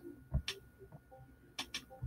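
A few faint clicks of a computer mouse: a low thump about a third of a second in, a sharp click just after, and two quick clicks close together near the end.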